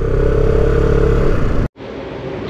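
Motorcycle engine running at a steady cruising speed with a steady hum, cut off abruptly near the end.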